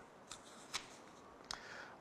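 Quiet room tone with a faint steady hiss and three soft, brief clicks or rustles.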